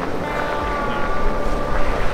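Ford Bronco crawling slowly over rock, its running engine and drivetrain a low rumble with a steady whine over it.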